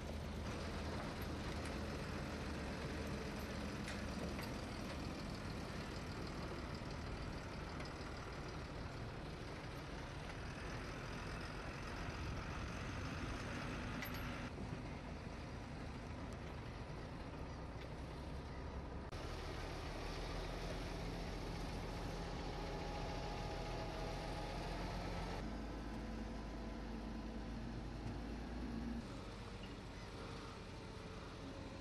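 Heavy diesel vehicles running: first a skip-loader truck, later a wheel loader, with a low steady engine hum. The sound changes abruptly several times where shots are cut together.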